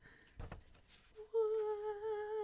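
A woman humming one long, steady "mmm" of delight, starting a little past halfway, after a faint brief noise about half a second in.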